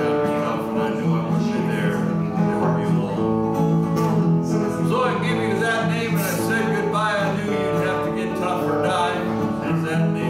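Acoustic guitar strummed steadily in a country rhythm, with a man singing over it.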